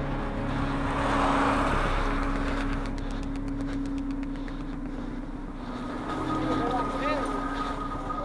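Motorway traffic: a car passes close about a second in, over a steady engine hum. Voices are heard from about six seconds in.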